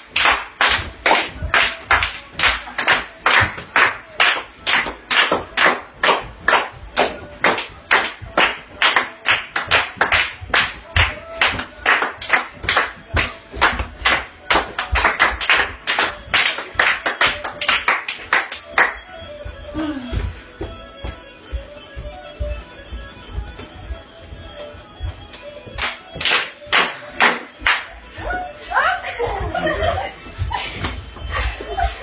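Hand clapping kept in steady time, about two and a half claps a second, over music. The clapping stops for several seconds past the middle and takes up again near the end.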